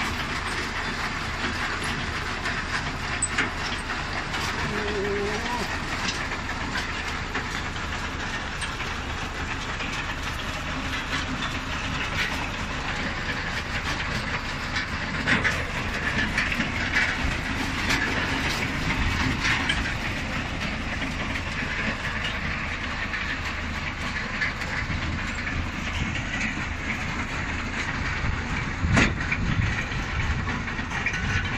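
Tractor-drawn potato harvester working: its conveyor chains and the potatoes on them rattling steadily with many small knocks, over the tractor's engine running.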